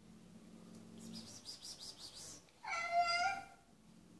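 A cat's low, drawn-out growl for about a second, then a loud yowl a little under three seconds in, typical of a cat squaring up to another cat.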